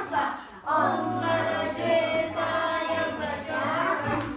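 A group of young children singing together in Turkish, in two sung phrases with a short break about half a second in.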